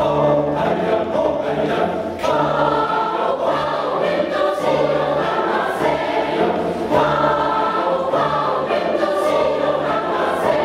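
Mixed choir of women's and men's voices singing together in sustained, overlapping notes, with a short break between phrases about two seconds in.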